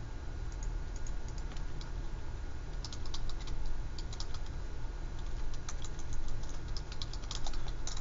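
Light, irregular clicks and taps in quick clusters, strongest in the second half, over a steady low hum.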